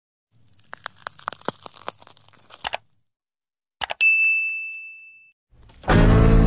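Intro sound effects: a quick, irregular run of small clicks, a pause, then two sharp clicks and a bright bell-like ding that rings out and fades over about a second. Music starts to swell in right at the end.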